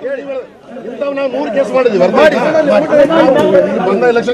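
Several people talking over one another: crowd chatter, with a short lull about half a second in.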